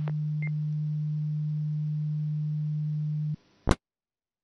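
Received 10-metre FM radio signal through an SDR receiver. A steady low tone holds over faint hiss after the transmitting station stops talking, with a brief high beep about half a second in. A little over three seconds in it cuts off with a click as the signal drops, and a short crackle follows.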